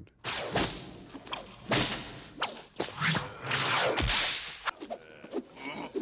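Bullwhip cracking several times in quick succession, each sharp crack with a swish of the lash through the air. These are the whip cracks recorded for Indiana Jones's whip.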